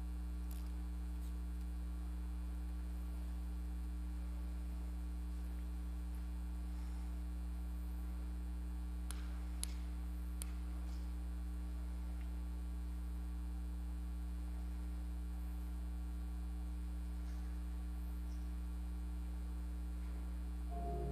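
Steady low electrical hum, with a few faint clicks about halfway through.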